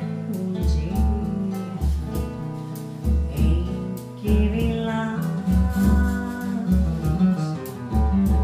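Live Brazilian music: a woman singing over a seven-string nylon-string guitar that plays deep bass notes under its chords, with light, regular percussion ticks.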